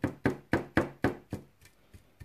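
A paintbrush dabbed again and again on a metal number plate, stippling on dry paint: a quick run of sharp taps, about four a second, each ringing briefly, that stops about a second and a half in.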